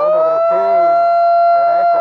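A megaphone's electronic siren holding one loud, steady high tone, with faint crowd voices underneath.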